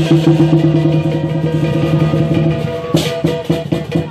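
Lion dance percussion band playing: a fast, even run of strokes on the big lion drum with cymbals, breaking into loud cymbal clashes about three seconds in.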